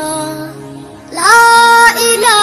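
A voice singing an Islamic devotional ghazal (Bengali gojol): a held note fades away over the first second, then a new, loud note comes in a little past the middle and is held steady until near the end.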